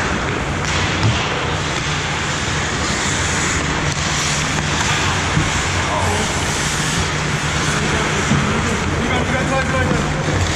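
Ice hockey play at the goal mouth in an indoor rink: a steady low hum of the arena under the hiss and scrape of skates on ice, with a couple of stick or puck clicks. A player calls out near the end.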